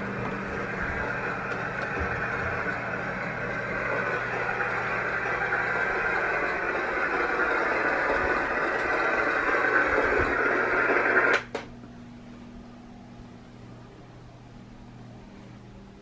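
A nursery white-noise sound machine hissing steadily, growing louder up close, then switched off with a click about eleven seconds in, leaving only a faint low hum.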